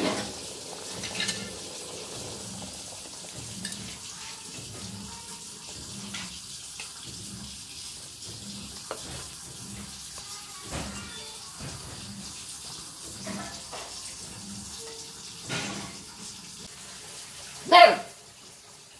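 Whole eggplants frying in a wok of hot oil: a steady sizzling and bubbling, with a faint low thud repeating about twice a second underneath. A short loud call cuts in just before the end.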